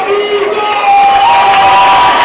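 Crowd cheering and yelling loudly for a fighter, with long drawn-out shouts that swell about a second in.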